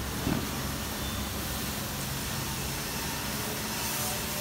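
Steady background noise of road traffic, a continuous low hum and hiss, with a brief small knock near the start.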